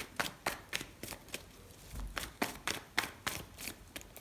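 A deck of tarot cards being shuffled by hand: a quick run of sharp card snaps, about three a second, with a short pause a little before the middle.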